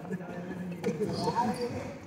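Badminton players' quick footsteps and shoe squeaks on a sports hall court floor during a rally, with a short squeak near the middle.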